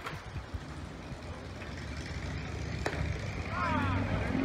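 A low, steady vehicle engine rumble that grows louder, with one sharp click about three seconds in.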